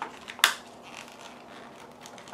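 Clear plastic sticker sheet crinkling sharply once, about half a second in, as it is handled, followed by faint rustling.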